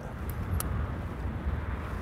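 Steady, low outdoor rumble with no clear single source, and two faint clicks in the first second.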